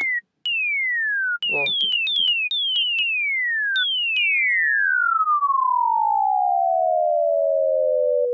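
Logic Pro ES2 synthesizer playing a pure sine wave swept down by its pitch envelope, the 'bomb whistle' drop. Several short falling whistles come first, a few struck in quick succession. Then two overlapping notes start a moment apart and glide slowly from high to low over about four seconds.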